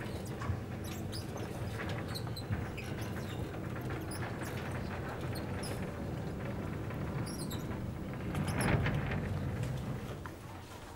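Chalkboard being wiped with a blackboard eraser: repeated rubbing strokes with short, high squeaks and scrapes, a little louder near the end.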